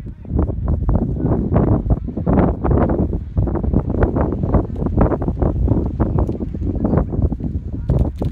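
Wind buffeting the microphone: a loud, gusting rumble that rises and falls unevenly.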